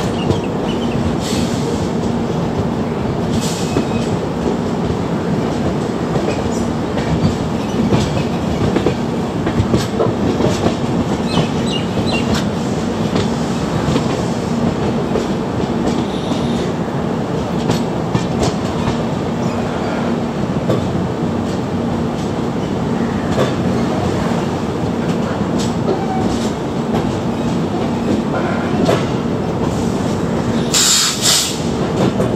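Express train running, heard from aboard one of its coaches: a steady rumble with a constant hum, and the wheels clicking irregularly over rail joints.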